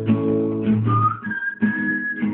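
Acoustic guitar strummed, with a whistled melody over it: a short rising whistled note, then a long high note held through the second half.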